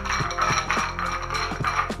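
Hand-twisted cast iron grinder clicking as its two halves are turned against each other, sharp metallic ticks about four to five times a second, over background music.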